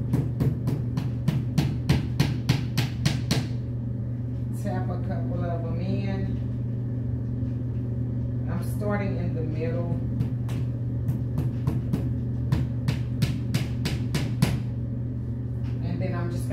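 Hammer tapping small nails into the thin backing panel of a flat-pack TV console, quick light taps about three to four a second. There are two runs: one in the first three seconds or so, another from about nine to fourteen seconds in.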